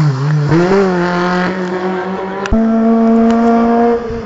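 Race car engine at high revs: its pitch dips, then climbs as it pulls through a gear. Partway through there is an abrupt change to a steady, sustained high engine note held at constant revs.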